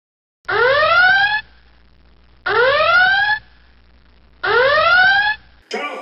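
An alarm sound effect: three loud wails, each rising in pitch and lasting just under a second, spaced about two seconds apart.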